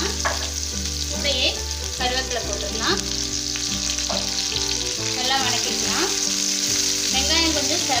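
Sliced onions and curry leaves frying in hot oil in a nonstick pan: a steady sizzle with crackling, with some stirring near the end.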